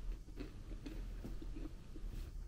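Mouth chewing a crunchy cream-filled biscuit stick (Glico Pejoy), with soft, irregular crunches several times a second.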